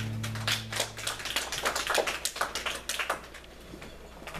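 A small congregation applauding: irregular hand claps that thin out and stop over about three seconds, while the last guitar chord of the song dies away in the first second.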